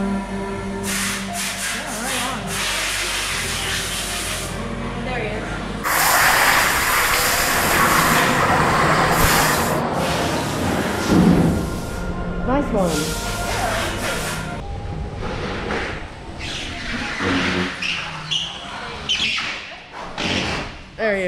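Music plays for the first few seconds. About six seconds in, a go-kart's engine starts sounding loud and close on an indoor track, with its pitch rising and falling as it accelerates and slows through the bends.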